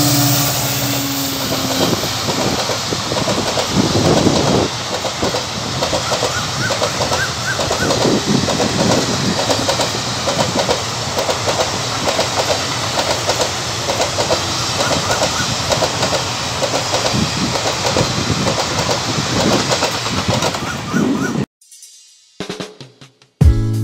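A WDG4D diesel locomotive's horn trails off about two seconds in, then the passenger train's coaches run past close by with a steady rumble and a rhythmic clickety-clack of wheels over rail joints. The sound cuts off suddenly just before the end.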